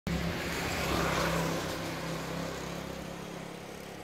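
A motor vehicle going by on the road, its engine and tyre noise fading gradually away.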